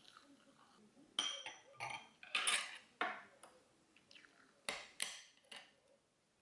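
Metal spoon and chopsticks clinking and scraping against ceramic bowls and plates while eating: a run of sharp clicks and short scrapes, then a few more near the end.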